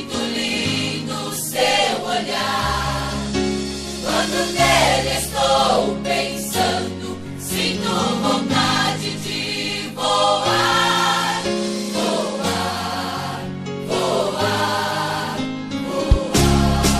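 Gospel hymn: a choir sings over an instrumental backing with a steady bass line.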